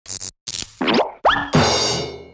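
Cartoon title-card jingle mixed with sound effects: two quick hits, then two rising boing-like glides, then a bright ringing chord that begins to fade.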